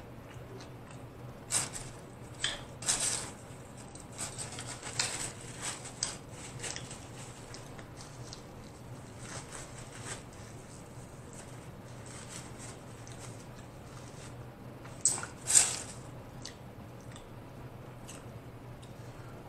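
Close-miked chewing of a steak burrito: wet mouth smacks and squishes in irregular clusters, with a few louder smacks about a second and a half in and again near the end.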